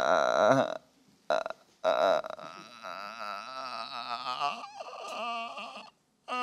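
A man laughing in throaty pulses, broken off by short silences about a second in, then resuming more quietly for a few seconds.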